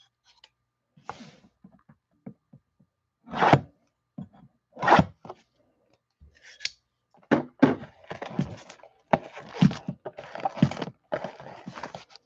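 A cellophane-wrapped cardboard trading card box being handled: a few light taps, then two louder knocks as it is moved, then from about seven seconds in the plastic shrink wrap crinkling and tearing as it is pulled off.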